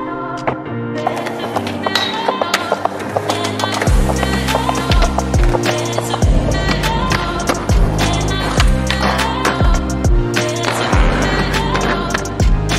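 Skateboard sounds, with the board's sharp clicks of pops and landings on concrete, over a chillout instrumental beat with guitar; the bass and beat come in about four seconds in.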